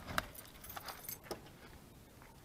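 A bunch of keys jangling, a few light metallic clinks in the first second and a half.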